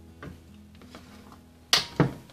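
Metal body of an HPC Silca Code-A-Key 1200 key duplicating machine being tilted over on a workbench: a few light ticks, then two sharp knocks close together near the end as the machine shifts onto its side.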